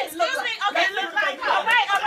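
Several people talking over one another in animated chatter.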